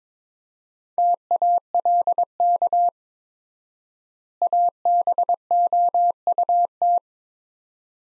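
Morse code sent as a single steady tone keyed in dots and dashes at 22 words per minute: two words, "talk" and then "about", with a long pause between them from the extra-wide word spacing.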